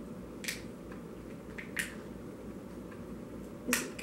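Three sharp clicks, spread across a few seconds with fainter ticks between, from a small toy part being handled. A steady low hum runs beneath.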